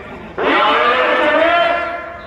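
A man's voice over a loudspeaker announcing in long, drawn-out phrases, starting about half a second in and fading near the end.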